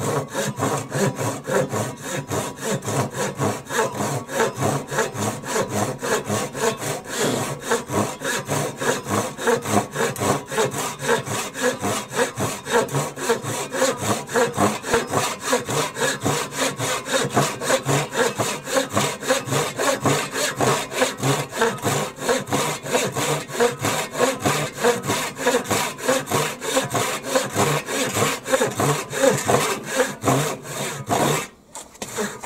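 Hand pull saw with a 10-inch, 15-teeth-per-inch steel blade cutting through a board in quick, steady back-and-forth strokes, its teeth rasping through the wood.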